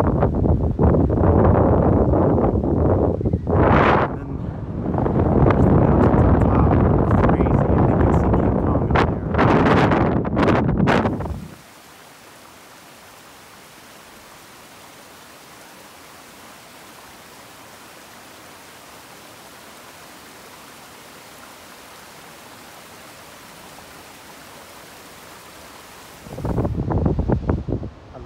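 Strong gusty wind buffeting the microphone for about the first eleven seconds, then a sudden cut to the steady, even rush of a small stream cascading over rocks, much quieter. Near the end the wind buffeting comes back.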